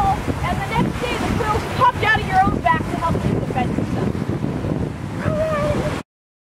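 Wind rumbling on the microphone over a low wash of surf, with high-pitched voices talking indistinctly over it; the sound cuts off abruptly at the end.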